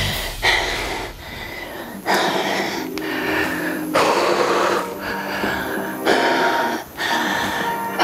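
Background music, with held tones and sections that change every second or two.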